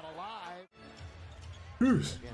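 A man's tired yawn, one drawn-out voiced breath that cuts off abruptly under a second in. Then faint basketball game broadcast sound, court noise and commentary, until a man's voice starts loudly near the end.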